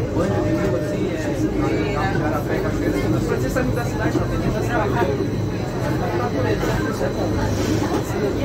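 Passengers chattering inside a car of the Corcovado electric rack railway, over the train's steady low rumble, as the opposite train passes close alongside.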